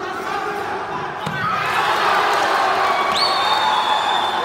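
Spectators in a sports hall cheering, swelling about a second and a half in. About three seconds in, a long whistle blast rises quickly and then holds steady: a judge's whistle stopping the bout to signal a score.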